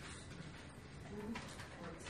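A man's voice, quiet and low, murmuring "forty" in the second half, over room tone.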